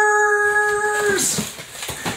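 A man's voice holding one long, steady high "ooh" for about a second, an excited exclamation. It fades out, and then come a couple of short knocks from the cardboard box being opened.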